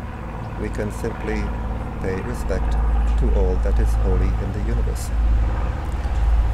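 A person speaking over a low, steady rumble that gets louder about three seconds in.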